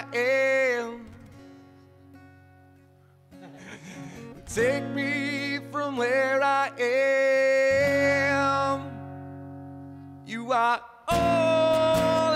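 Live acoustic guitars strummed with a man singing long, held notes. About a second in the singing stops and the chord rings away softly for a few seconds, then the voice and guitars come back in about four and a half seconds in and carry on to the end.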